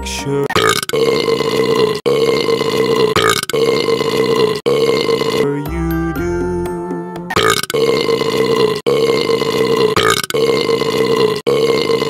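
Long, drawn-out burps dubbed over a children's song in place of the sung words, with the song's music underneath. They come one after another in two runs of about four, split by a short stretch of music alone near the middle.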